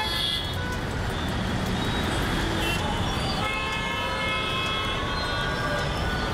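Traffic noise of a jammed road with many car horns honking, several overlapping at once, thickest in the second half.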